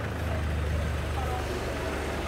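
Small taxi's engine idling at the kerb, a steady low hum.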